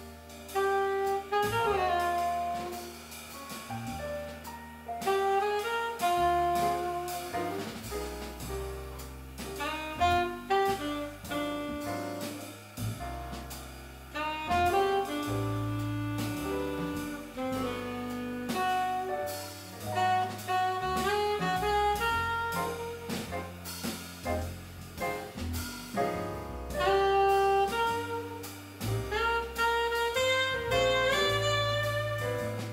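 Live jazz quartet playing: a saxophone carries the melody over grand piano, upright double bass and drum kit.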